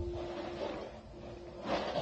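A baby's short breathy giggle near the end, over a faint steady hum and low rumble.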